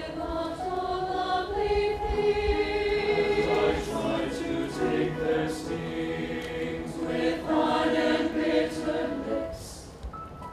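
Mixed high school choir singing held chords in harmony, the sound swelling twice and fading near the end.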